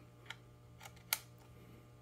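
Round connector plug pressed into the receptacle of a FARO Focus X330 battery charging deck: a few faint clicks, the sharpest about a second in as the correctly keyed plug seats with an easy press.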